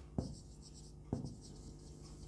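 Marker pen writing on a whiteboard: faint strokes of the tip across the board, with two brief light knocks, one just after the start and one about a second in.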